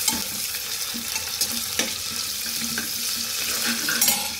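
Sliced onions sizzling in hot oil in a pressure cooker, stirred with a ladle that scrapes and clicks against the pot a few times.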